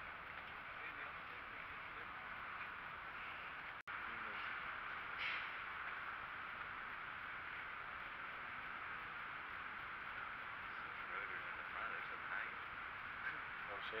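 Steady background hubbub with faint, indistinct voices in the distance. A brief dropout to silence comes about four seconds in.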